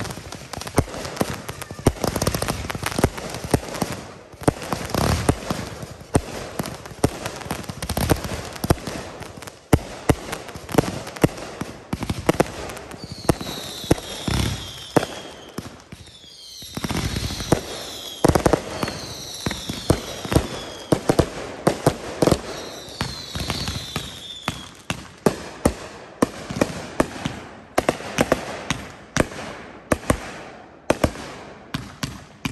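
Consumer firework cakes firing in a continuous barrage: rapid launches and aerial breaks, many shots a second. Through the middle, groups of whistling tones fall in pitch, and there is a brief lull just past halfway.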